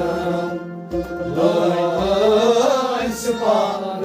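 Men singing a Kashmiri Sufi song in a chant-like style over a harmonium drone and a bowed sarangi-type fiddle, with a low beat about once a second.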